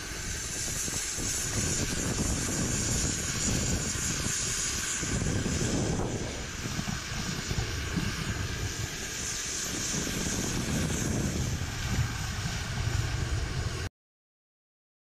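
Strong gusting wind in a snowstorm buffeting the microphone, a rumbling roar with a steady high hiss. It cuts off abruptly just before the end.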